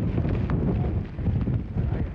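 Wind buffeting the microphone in uneven gusts, with a single faint tick about half a second in.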